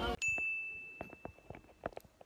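A single high, bell-like ding that rings on at one steady pitch for about a second and a half, with scattered light clicks and taps under it.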